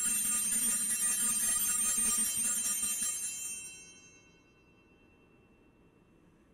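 Altar bell ringing at the elevation of the consecrated host, a bright ringing that holds for about three seconds and then fades away.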